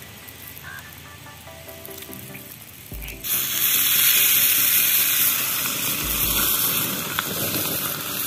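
Masala-coated red snapper laid into a pan of hot oil, sizzling loudly: the sizzle starts suddenly about three seconds in as the fish hits the oil and carries on steadily.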